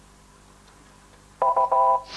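Game-show buzzer: a short electronic multi-tone beep, about half a second long, comes in sharply about a second and a half in after a quiet pause. It signals that a contestant has buzzed in to answer.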